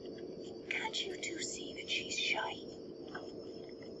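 A person whispering for about two seconds, starting near the beginning, over a steady faint hum.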